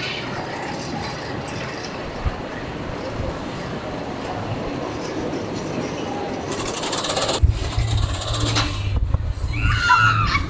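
Gerstlauer Euro-Fighter roller coaster car climbing its vertical lift: a steady mechanical running noise, joined about seven seconds in by a heavier, uneven low rumble.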